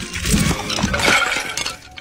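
A bicycle crash with a clay urn shattering: a low thud followed by about a second and a half of clattering and breaking.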